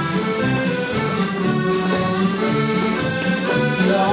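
Live folk dance band playing a lively dance tune with a steady quick beat.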